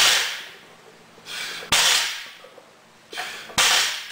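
A lifter's hard, forceful breathing while set over an axle bar before the pull. He takes three rounds of breaths about two seconds apart, each a softer breath followed by a sudden sharp blast that trails off.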